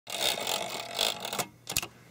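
Typewriter sound effect: a dense mechanical clatter for about a second and a half, then a brief pause and two sharp clicks near the end.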